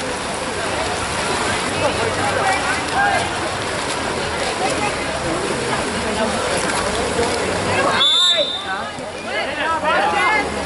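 Spectators chattering and calling out over the splashing of swimming water polo players; a referee's whistle blows once, briefly, about eight seconds in.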